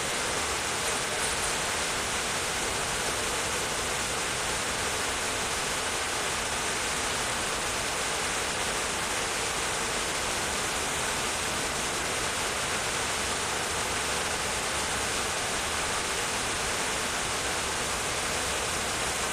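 A steady, even hiss that does not change for the whole stretch, with no distinct events in it.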